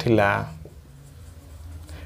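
Marker pen writing on a whiteboard, faint and quiet, just after a spoken word trails off near the start.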